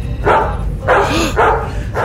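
A dog barking, three short barks about half a second apart.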